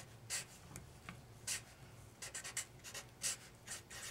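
Felt-tip Sharpie marker writing on paper: a run of short, faint, scratchy strokes as an equation is written out.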